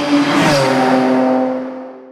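Car engine running at high revs, with a steady note over a rushing noise. The note drops in pitch about half a second in, then the engine and the rush fade away.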